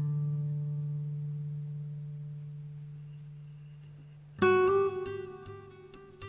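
Acoustic guitar music: a low chord rings and slowly fades, then a new chord is strummed about four seconds in.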